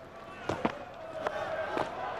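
Cricket bat striking the ball in a pull shot: a sharp crack about half a second in, with a few fainter clicks after it. Stadium crowd noise swells near the end as the ball carries toward the boundary.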